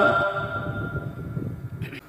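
The echo of a male reciter's long held note of melodic Quran recitation dying away through the hall's loudspeakers just after his voice stops, over a low room rumble. A brief hiss comes near the end.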